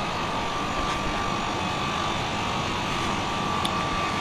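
Steady background noise: an even low rumble and hiss with a faint thin whine held through it, unchanging and with no distinct events.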